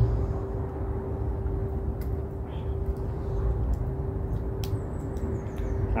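A steady low outdoor rumble with a constant hum, and a few faint clicks as hands strain at a stuck lid on a glass jar that won't twist open.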